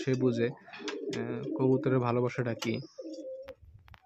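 Domestic pigeons cooing close by, a run of low rolling coos that stops about three seconds in, then one short coo and a few light clicks.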